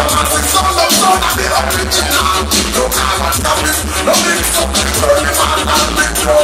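Loud party music with a heavy bass line and a steady beat.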